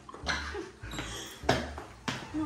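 Feet stepping and stamping on a tile floor during dance moves: a few sharp thuds, roughly half a second to a second apart.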